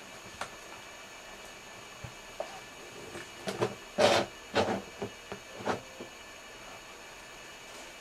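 Paper towel rustling and crinkling in a handful of short bursts around the middle, the loudest about four seconds in, as a snake is wiped down by hand, over a steady faint electrical hum.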